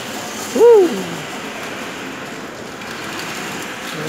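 A short hooting "whoo" from a person's voice about half a second in, rising then falling in pitch, over steady background noise.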